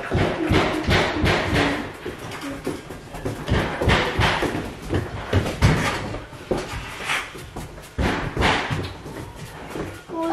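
Irregular knocks, thumps and bangs, coming in clusters of several a second.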